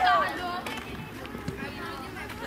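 Loud shouting on a football pitch, one high, sliding call at the very start, then fainter background voices and outdoor noise, with a faint thud near the end.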